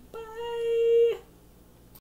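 A woman's voice holding one high, steady note for about a second, a drawn-out goodbye, swelling slightly before it stops abruptly.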